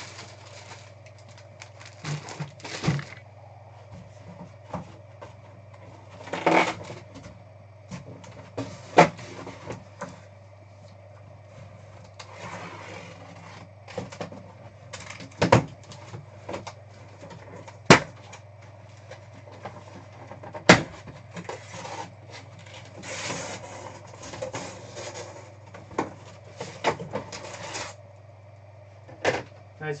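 Handling noise: a plastic bag crinkling and items being shifted around inside a cardboard box, with scattered knocks and short rustles over a steady low hum.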